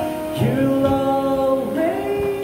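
A man singing into a microphone over backing music, holding one long note that slides up to a higher note near the end.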